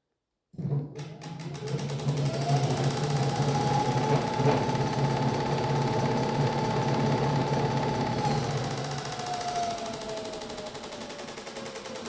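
Electric scooter's 4000 W hub motor, driven by a FarDriver controller, spinning the wheel up to top speed (about 1000 rpm) with a whine that rises over about two seconds. The whine holds steady over a low hum, then falls slowly as the throttle is let off and the wheel coasts down.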